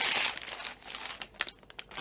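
Shiny plastic biscuit packet crinkling as it is opened by hand: a dense burst of crackling at the start, then scattered crackles that thin out and fade.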